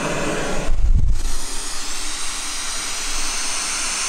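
Steady white-noise hiss from a baby sound machine, with a brief low thump about a second in.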